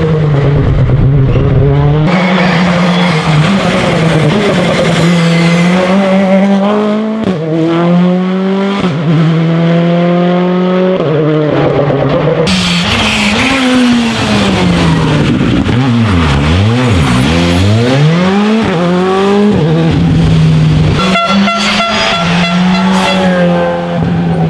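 Rally cars at full throttle, engine pitch climbing through each gear and dropping back at every shift, then falling away and picking up again through a tight corner. The sound jumps abruptly between passes.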